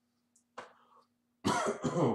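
A man coughing, two coughs in quick succession about one and a half seconds in.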